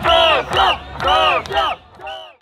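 Crowd chanting, led by a man shouting through a megaphone: a long call then a short call, repeated twice, fading out near the end.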